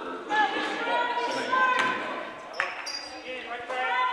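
Basketball game sound on a hardwood gym court: a ball bouncing, short sneaker squeaks and scattered voices of players and crowd, heard in a large hall.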